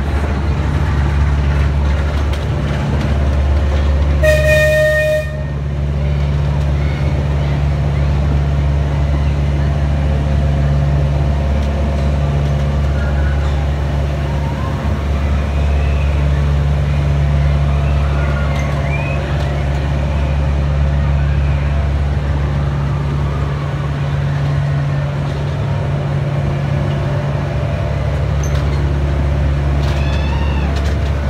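Diesel engine of a one-third-scale miniature railway locomotive running steadily as it hauls the carriages. About four seconds in, the locomotive's horn sounds once for about a second.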